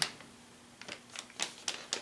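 Plastic bait packaging and soft-plastic swimming craw baits being handled, with a scatter of light clicks and crinkles starting just under a second in.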